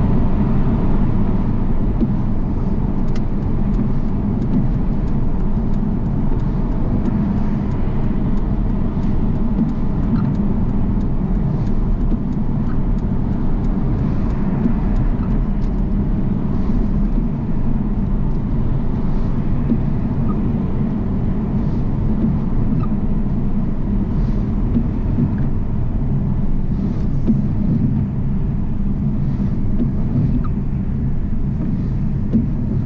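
Steady road and engine noise heard from inside a car's cabin at motorway speed, mostly a low rumble with tyre hiss from a wet road.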